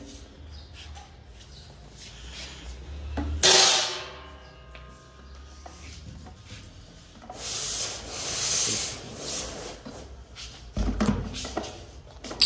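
Metal hatch lid of an underground water tank laid open onto a tiled floor, a clang with a short ring about three and a half seconds in. Rubbing and scraping follow, then a few knocks near the end as a plastic bucket is lowered into the tank's concrete opening.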